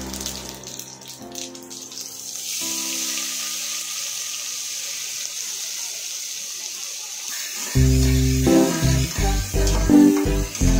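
Cumin seeds and sliced onions sizzling in hot oil in a steel pot: a steady hiss that swells about two and a half seconds in. Background music comes back loudly near the end.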